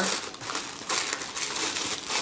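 Gold metallic tissue paper crinkling and rustling in irregular crackles as hands dig through it inside a cardboard box.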